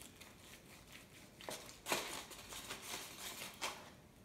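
A large serrated knife sawing through a pot roast held with metal tongs, the aluminum foil beneath crinkling: a few short noisy strokes in the second half.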